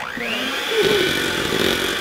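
Electric hand mixer switched on, its motor whining up to speed over about the first second, then running steadily as the beaters churn butter and eggs in a bowl.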